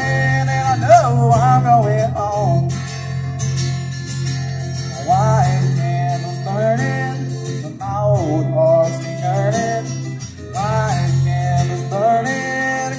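Live country-style Christmas music played on two amplified guitars through a small PA speaker. A melody line with sliding, bending notes runs over the strummed accompaniment, with a low note held under most of it.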